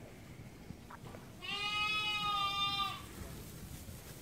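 A lamb bleats once, a single long, high-pitched call of about a second and a half that holds a steady pitch.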